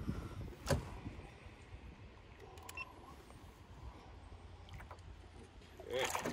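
Musky being held in the water beside a canoe for release: low, steady rumble with a single sharp knock about a second in, then a splash near the end as the fish kicks free.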